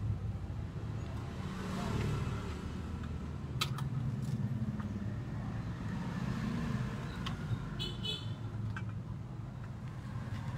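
Steady low rumble of road traffic, slowly rising and falling, with a few sharp clicks and a short high-pitched beep about eight seconds in.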